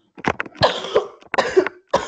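A person coughing in a fit: about four coughs in quick succession.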